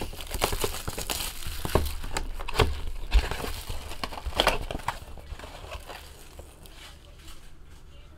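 Plastic shrink-wrap crinkling and a cardboard trading-card box rustling as the sealed box is unwrapped and opened. Busy, irregular crackling and scraping fill the first few seconds, then thin out to lighter handling.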